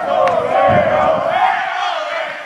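A group of voices shouting and cheering together, a winning football team's celebration after a penalty shootout.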